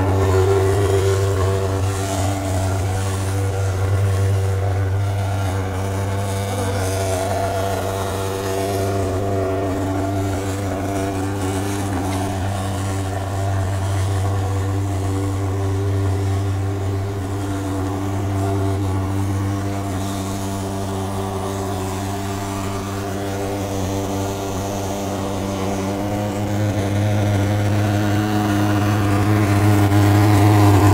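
Portable pulse-jet thermal fogging machine running steadily as it blows fog: a low, even buzzing drone with a stack of overtones. It grows a little louder near the end.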